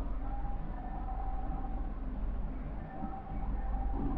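Steady low electrical hum and background hiss, with a faint high tone that comes and goes.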